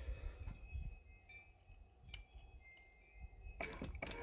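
Quiet outdoor background with a faint low rumble and a few light, high clinks. Near the end, a louder noise sets in.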